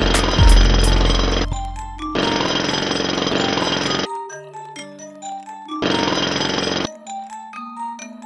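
A hammer beating a sheet-metal patch panel into shape, in three bursts of rapid blows: about a second long at the start, about two seconds in the middle and a shorter one near the end. Background music plays throughout.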